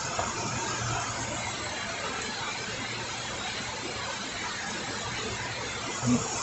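Steady rain falling onto standing floodwater: an even hiss with no separate events.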